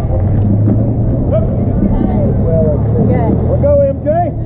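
Voices of players and spectators calling out at a softball game, scattered shouts with one drawn-out call near the end, over a steady low rumble.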